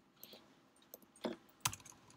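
A few separate keystrokes on a computer keyboard during code editing, faint, with the two loudest taps a little past halfway.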